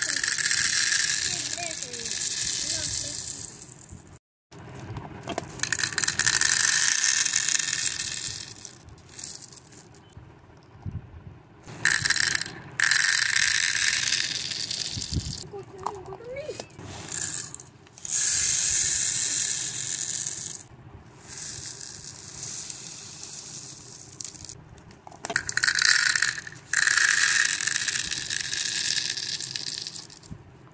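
Small plastic pearl beads poured from a plastic bag into a clear plastic jar, rattling as they pour in. This repeats in several pours a few seconds long with quieter gaps, and a plastic lid is screwed onto a jar partway through.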